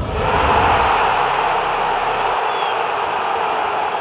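Logo-animation sound effect: a loud, steady rushing noise that swells in over the first half-second.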